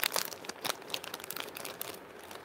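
Thin plastic packets crinkling as they are handled, a run of irregular sharp crackles that thin out toward the end.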